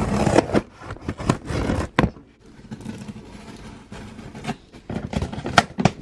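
A scissors blade slicing through packing tape on a cardboard box: a scratchy scraping of blade on tape and cardboard, broken by sharp clicks, loudest in the first half second and again about two seconds in.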